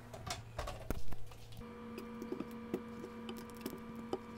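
An oven door being swung shut, with clicks and a solid knock about a second in. Then butter sizzling and crackling in a frying pan as a silicone spatula moves it about, with many small ticks over a steady hum.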